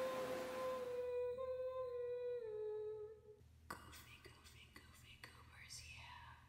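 A long held hummed note that steps down in pitch twice before stopping about three and a half seconds in, followed by faint clicks and rustles.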